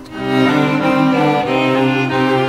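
Bowed strings, led by a cello, playing a slow hymn melody in long held notes, after a brief break between phrases at the start.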